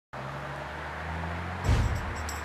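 Street traffic: a car's engine hum and road noise, steady, with a heavier low thud near the end.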